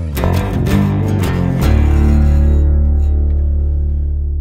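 Closing bars of a song on guitar and bass: a few plucked notes, then, about a second and a half in, a final low chord is struck and left to ring, slowly fading.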